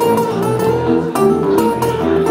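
Acoustic guitar played live: a run of plucked notes with a few sharp strums.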